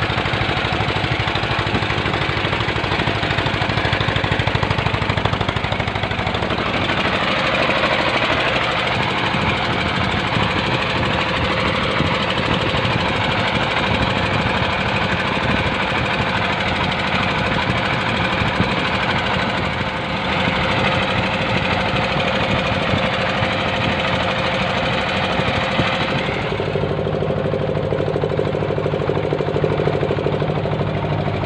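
Small wooden boat's engine running steadily under way, a fast, even knocking beat. Its tone shifts about a quarter of the way in and again near the end.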